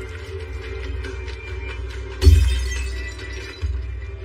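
Dramatic film score over a steady low drone, cut by a sudden loud crash with a ringing tail about two seconds in and a smaller hit shortly before the end.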